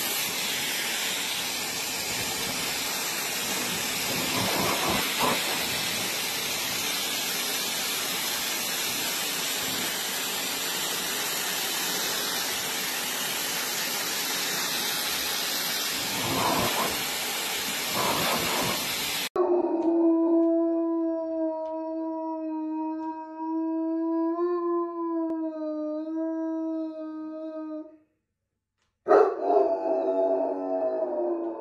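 Handheld hair dryer blowing steadily on a wet dog, then cutting off abruptly about two-thirds of the way through. After it, a dog howls in one long, steady note lasting several seconds, which stops shortly before the end.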